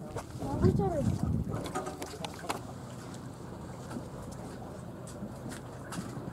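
Steady low hum of a motor boat's engine, with indistinct voices over it in the first two seconds or so.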